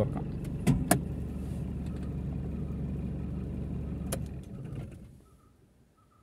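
Chevrolet Tavera's engine idling with a steady low hum, with a couple of sharp clicks about a second in. It is switched off a little over four seconds in, just after another click, and dies away to near silence.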